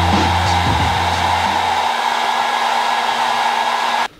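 Handheld hair dryer running steadily, a constant rush of air that cuts off suddenly at the end.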